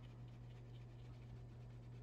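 Faint scrubbing of a paintbrush on watercolor paper, under a low steady hum.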